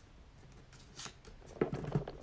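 Hands handling and pressing glued paper half circles onto a paper sheet. A short paper crackle comes about a second in, then a burst of rustling and light taps near the end.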